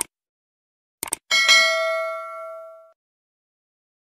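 Subscribe-button animation sound effect: a short click, two quick clicks about a second in, then a bell ding that rings and fades away over about a second and a half.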